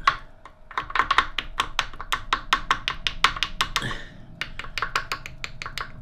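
Rapid light hammer taps on a crankshaft bearing end cap of a Reliant 750cc alloy engine, knocking the cap loose from the crankcase. About five strikes a second, with a short pause about four seconds in.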